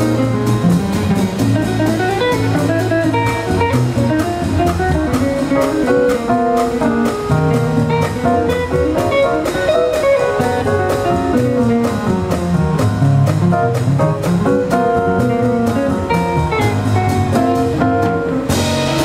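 Live jazz from a small group: a guitar carries the lead line in single plucked notes over upright bass and drum kit, with the horns silent.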